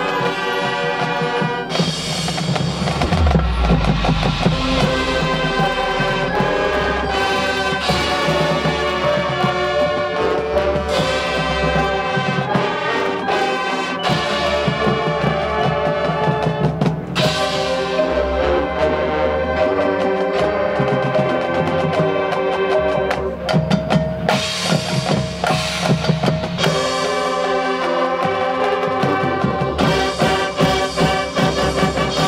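Marching band playing: sustained brass and wind chords over drum rolls and bass and snare drums, with mallet percussion from the front ensemble. The playing turns choppier and more accented in the last few seconds.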